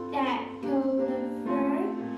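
Children singing a song with piano accompaniment, holding long notes.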